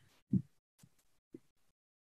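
A near-silent pause with one short, soft low thump about a third of a second in, followed by two much fainter ones.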